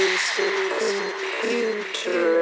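Sparse passage of an electronic music track with no bass or kick drum: a broken mid-pitched synth line and short bright ticks repeating over it.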